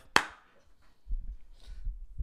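A single sharp smack just after the start, then low rumbling bumps in the second half from a boom-arm desk microphone being handled.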